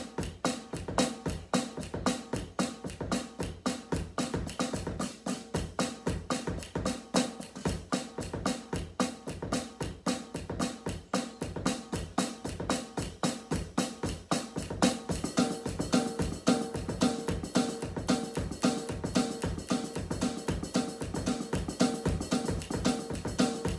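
Drum kit played with sticks in a steady, fast, even groove. About fifteen seconds in, a repeating pitched tone joins the beat.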